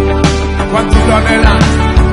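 Live band playing a Christian worship song: piano, keyboards and electric guitar over a steady drum beat, with little or no singing.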